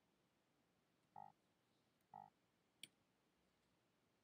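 Near silence broken by three faint, short computer mouse clicks about a second in, two seconds in and just under three seconds in; the last is the sharpest.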